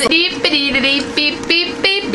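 A woman's voice singing a few short notes, each held at one pitch before stepping to the next.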